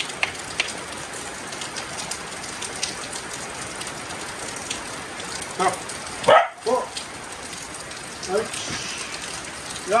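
Steady rain with scattered raindrop taps, and a corgi giving a few short barks in the second half, the loudest about six seconds in.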